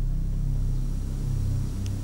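A low, steady rumbling drone of dramatic background score, its deep notes shifting slowly, under a silent pause in the dialogue.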